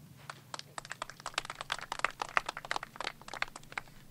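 Paper sheets being handled and rustled close to a podium microphone, a quick irregular run of crinkling clicks.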